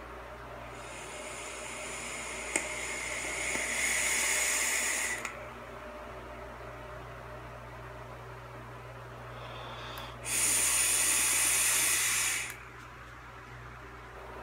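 Two long draws on a box-mod e-cigarette, each an even airy hiss of air pulled through the atomizer as it fires. The first lasts about four seconds and grows louder before cutting off; the second, about two seconds long, comes near the end. Quieter breathy exhaling of vapor lies between them.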